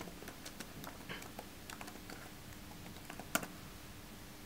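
Typing on a computer keyboard: a string of quick, uneven key clicks with one sharper, louder click a little past three seconds in.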